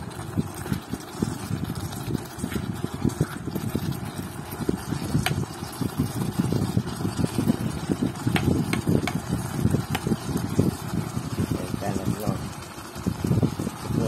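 A plastic ladle stirring a thick meat-and-herb curry in a pot, with a few sharp clicks as it knocks against the pot, over a steady low rumble.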